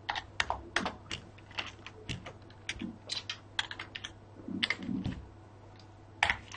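Computer keyboard keys clicking as a single word is typed: a quick, uneven run of keystrokes with short pauses between groups.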